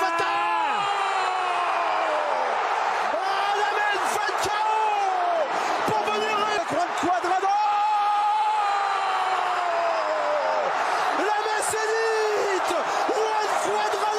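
A football commentator's long drawn-out goal cries, several held shouts each rising and falling in pitch, the longest lasting about five seconds, over the steady noise of a stadium crowd.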